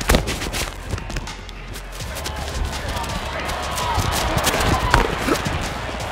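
On-field football sound through a player's body-worn microphone: a sharp knock right at the start, then a run of quick clicks and knocks from running feet and pads and gear, over a steady rumble of crowd noise and scattered voices.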